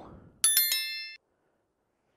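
Notification-bell sound effect of a subscribe-button animation: a bright, high chime struck about half a second in, ringing out and dying away within a second.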